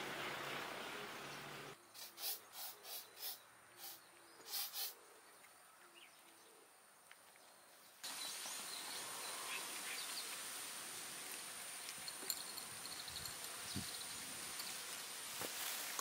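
Cats crunching dry food from ceramic bowls: about eight short crisp crunches, spread over a couple of seconds. Then outdoor ambience with a steady high-pitched insect call and a few faint bird chirps.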